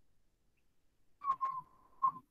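Near silence, then a little past a second in a couple of sharp clicks and a short, steady electronic beep that holds one pitch for under a second.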